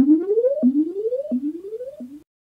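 Electronic synthesizer tone of a production-logo sting, sweeping up in pitch and snapping back down over and over, about three rising sweeps in two seconds. It fades as it goes and cuts off just after a fourth sweep begins.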